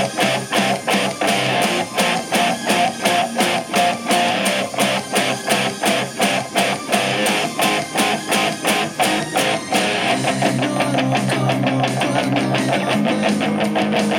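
Electric guitar played along with the song's recorded backing, a steady beat of drum strokes under the guitar. About ten seconds in the beat turns faster and denser.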